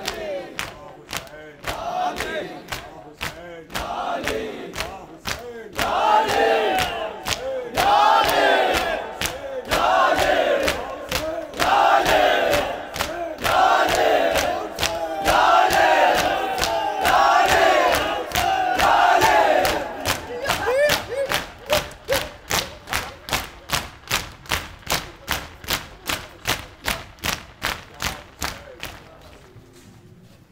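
Crowd of mourners beating their chests in unison (matam), sharp rhythmic slaps about twice a second. From about six to twenty seconds in, the crowd chants loudly in repeated bursts over the slaps. The chanting then drops away and the slaps quicken before fading at the very end.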